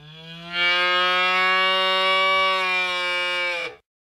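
A single long bull moo, a recorded sound effect played by an animated longhorn bull in a virtual world. It swells about half a second in, holds steady, and cuts off sharply shortly before the end.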